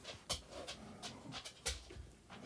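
Stylus on a tablet's glass screen, faint and quiet: two sharp taps, about a third of a second in and near the end, with soft strokes between as a digit is erased and rewritten.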